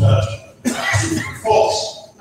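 Only speech: a man talking in a hall, heard through a video-call stream.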